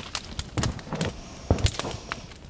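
Bonfire of burning wooden pallets crackling, with irregular sharp pops and snaps several times a second; the loudest pair comes about one and a half seconds in.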